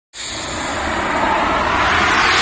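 Whoosh sound effect for an animated logo intro: a rush of noise that starts suddenly and swells steadily, rising in pitch, over a low rumble.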